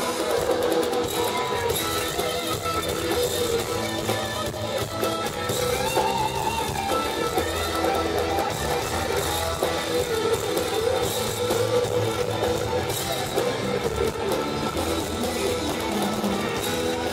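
Live rock band playing an instrumental passage, with electric guitar to the fore over the band.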